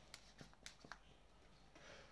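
A few faint, sharp clicks in the first second as a hand vacuum pump is worked on a plastic cupping cup, drawing suction on the skin; then near quiet.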